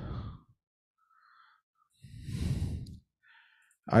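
A man sighing: one breathy exhale about two seconds in, lasting about a second.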